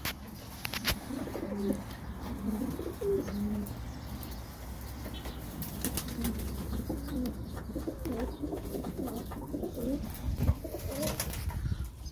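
A flock of domestic pigeons cooing as they feed, many short low coos overlapping, with occasional wing flaps and a few sharp clicks.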